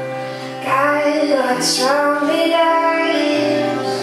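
Woman singing live to her own acoustic guitar. The guitar chords ring steadily, and a sung phrase with gliding pitch comes in about a second in and ends shortly before the end.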